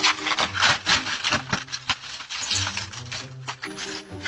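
Dense, irregular rustling and scraping noise in quick rough strokes, with a faint low hum of music underneath.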